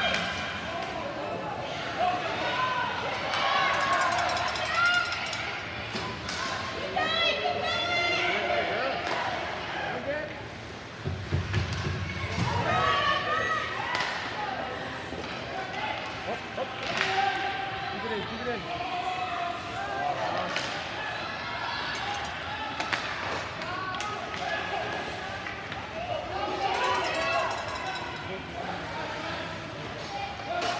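Ice hockey game in a rink: many voices calling and shouting without clear words, over sharp clacks and knocks of sticks, puck and the boards, with a low thud about eleven seconds in.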